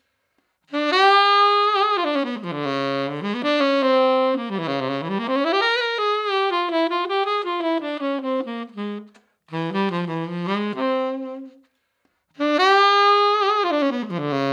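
P. Mauriat PMXT-66RUL tenor saxophone playing a melodic phrase that starts about a second in, with short breaks near the ninth and twelfth seconds and a new phrase starting near the end. It is heard close-up through a ribbon microphone.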